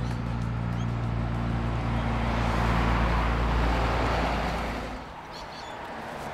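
Motor vehicle passing close by on a busy road: a low engine hum and tyre rush build to a peak about three seconds in, then fade away near five seconds.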